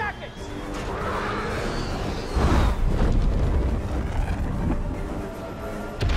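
Film action soundtrack: dramatic score under a rising rush of noise, then a sudden deep rumbling boom about two seconds in that stays loud.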